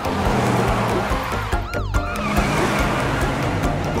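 A cartoon fire truck's engine and road noise as it drives up, under background music.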